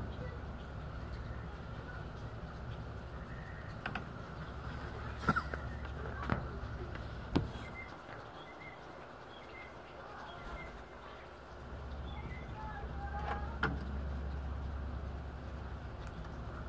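Scotsman ice machine running with a steady low hum and a few sharp clicks; the hum cuts out about seven seconds in and comes back about four seconds later, the machine cycling off and back on.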